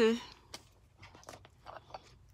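A woman's voice finishing one word, then a quiet pause with a few faint small clicks.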